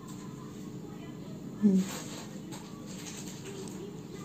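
Quiet room tone with a faint steady hum, broken once by a short spoken word.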